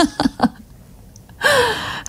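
A woman's brief laughter, then a short pause and a breathy, falling "ah" as she draws breath.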